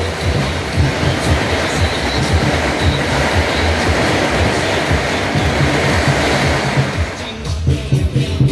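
A long string of firecrackers going off in one rapid, continuous crackle, thinning out about seven and a half seconds in, with music underneath.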